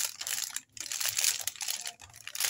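Wax paper and plastic sheeting crinkling under hands pressing a cloth napkin down on them, in two stretches split by a brief pause about half a second in.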